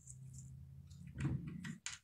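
Faint handling sounds of a wooden stick and ribbon being picked up, over a low steady hum.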